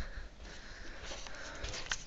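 Faint rustling and breathing close to a handheld camera as it is carried and turned, with a light click near the end.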